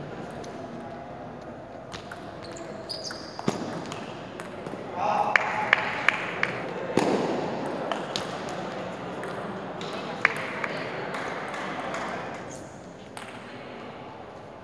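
Table tennis ball being hit back and forth, sharp clicks off the paddles and table in a quick run near the middle, with a few single hits before and after, echoing in a large hall over background chatter.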